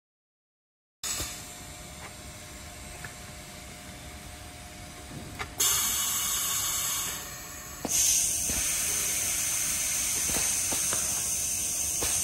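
Compressed-air hiss from a pneumatic bag-opening rig in two blasts. The first comes about halfway through and lasts over a second; the second starts with a click shortly after and runs on steadily. Sharp clicks of pneumatic valves and grippers actuating sound over a low workshop background.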